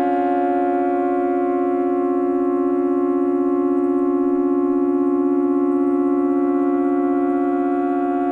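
Minimal electronic synthesizer music: a chord of steady, sustained tones held unchanged, like a drone.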